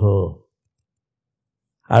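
A man speaking Tamil, finishing a phrase about half a second in. Then dead silence for over a second, and speech resumes near the end.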